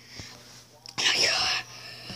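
A person's breathy whisper, about half a second long, about a second in.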